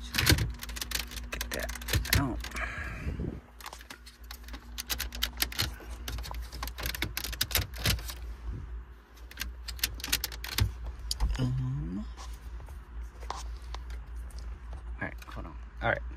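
Irregular sharp clicks and rattles of hard plastic dashboard trim as fingers pry and work at a stubborn plastic retaining clip on a BMW F32 centre-dash trim panel.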